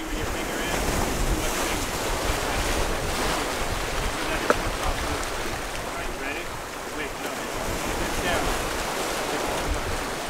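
Small waves breaking and washing over rocky shoreline, with wind buffeting the microphone. A single sharp click about halfway through.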